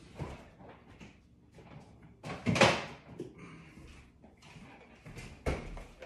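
A refrigerator door being worked off to the side: a loud thud about two and a half seconds in and a sharper knock near the end, with light clatter between.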